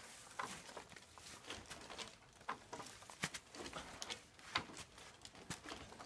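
Faint, irregular clicks, taps and crackles as a dead tree is rocked back and forth by hand in a steady sway at its first harmonic.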